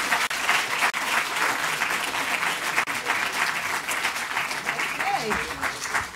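Audience applauding, a full round of clapping that eases off near the end.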